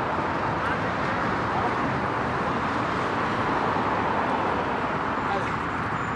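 Steady outdoor background noise with no distinct events.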